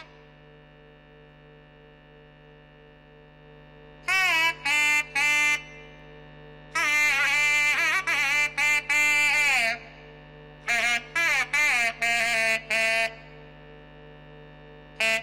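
Nadaswaram playing a Carnatic melody of sliding, ornamented notes over a steady drone. For the first four seconds only the drone sounds; then the pipe comes in with short notes, a long phrase in the middle, and more short notes near the end.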